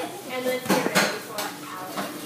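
Children talking, with a few sharp clicks and clatters from about half a second to a second and a half in.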